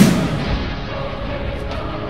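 A booming impact sound effect at the very start, dying away over about half a second, followed by steady background music.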